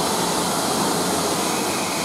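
Steady loud hiss of steam escaping from the Southern Railway Merchant Navy class Pacific 35028 Clan Line as its Pullman train moves out of the station.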